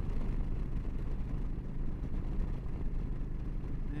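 Wind rushing and buffeting around the rider's helmet at about 70 mph on a Yamaha V-Star 1300, with its V-twin engine droning steadily in fifth gear. The turbulence comes from air spilling over a windshield that is too short for the rider.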